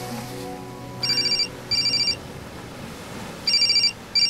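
Mobile phone ringing with an electronic ring: three pairs of short, high trills, evenly spaced. Soft sustained background music plays under the first two rings and fades out about two seconds in.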